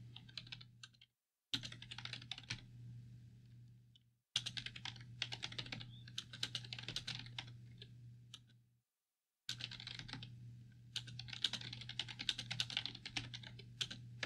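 Quiet typing on a computer keyboard: rapid, irregular key clicks in runs separated by short pauses. A low steady hum runs underneath, and the sound drops out completely during the pauses.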